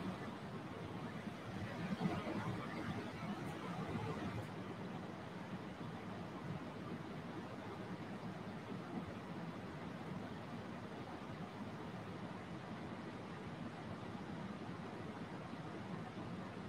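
Faint ujjayi breathing: slow breaths drawn through a narrowed throat, giving a soft, steady hiss with a slight swell about two seconds in.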